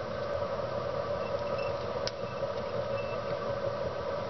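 Steady mechanical background hum. A few faint short high chirps come and go, and there is a single light click about two seconds in.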